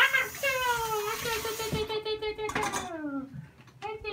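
A baby's long, drawn-out high vocal sound, an excited squeal-like vowel held steady for about three seconds that falls in pitch at the end.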